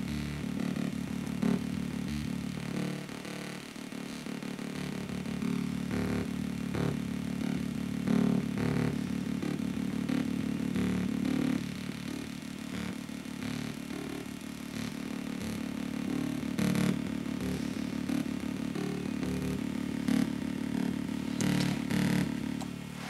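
Audio signal played through a one-transistor DIY resonant low-pass filter, coming out as a steady, bass-heavy low drone with scattered clicks while the filter's knob is turned.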